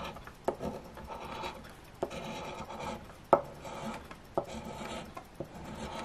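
A coin scraping the coating off a scratch-off lottery ticket, in repeated rasping strokes with a few sharp clicks between them.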